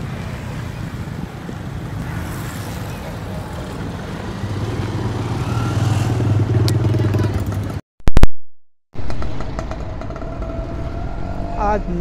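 Street traffic noise: a motor vehicle's engine grows louder around the middle and then fades. At about two-thirds of the way through, the sound cuts out for about a second with a sharp loud click, a recording glitch. Steady traffic noise then returns.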